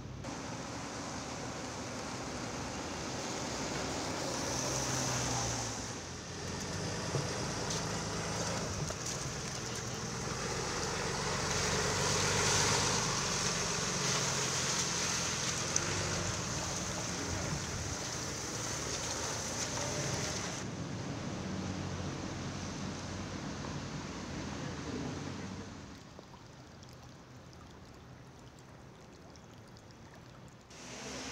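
Water gushing from a ruptured water main, a steady loud rushing that drops to a quieter flow a few seconds before the end.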